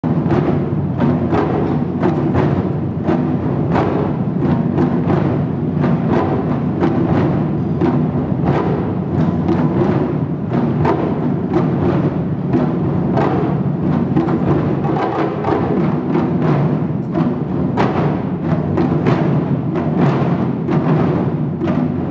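Ensemble of Japanese taiko barrel drums played together by many drummers, a dense, driving rhythm of strikes that runs on without a pause.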